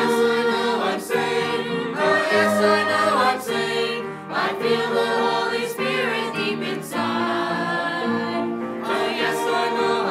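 A small mixed church choir of men, women and children singing a hymn, one held note after another.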